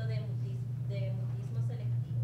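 Faint, indistinct voices of people talking in a room, over a steady low hum that is the loudest sound throughout.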